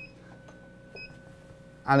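Faint short electronic beeps, about one a second, over a faint steady high whine, then a man's voice begins near the end.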